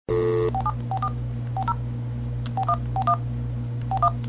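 Touch-tone telephone being dialed: a steady tone that cuts off after about half a second, then a string of about seven short key-press tone pairs at an uneven pace. A steady low hum lies under it.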